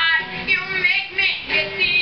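A singer's high voice carrying a melody that rises and falls, over strummed acoustic guitar. It sounds distant and roomy, recorded from the back of a room.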